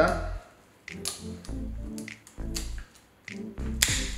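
Kitchen scissors snipping through the spiny fins of a whole sea bass: a handful of short, sharp clicks, the loudest near the end, over background music.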